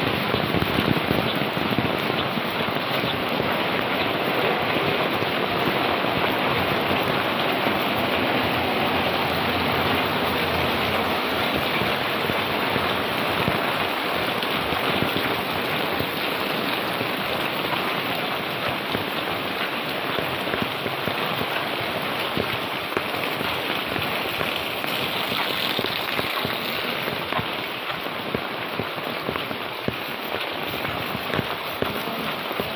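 Heavy rain falling steadily on an umbrella held overhead and on the wet concrete lane, a dense, even patter that eases slightly in the later part.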